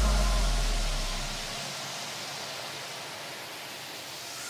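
A white-noise wash in an electronic dance track, with a deep bass note fading out over the first second and a half and the hiss slowly dying down after it.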